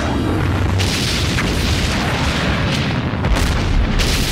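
Dramatic soundtrack mix of explosion booms over a dense, steady low rumble, with music underneath; several sharp blasts stand out, the heaviest near the end.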